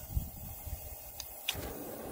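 Cast-iron propane ring burner lighting: a small click, then about one and a half seconds in the gas catches with a sudden pop and the burner settles into a steady rushing flame.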